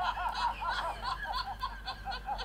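A man's laughter played through a phone's small speaker: a quick, thin, even run of 'ha-ha-ha' notes, about five a second.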